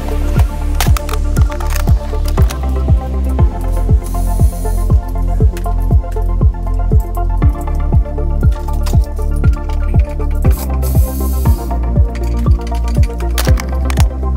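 Background music with a steady kick-drum beat, about two beats a second, over a held bass line.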